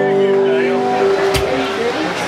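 Guitars holding a last chord that fades out, with voices talking over it and a sharp knock about one and a half seconds in.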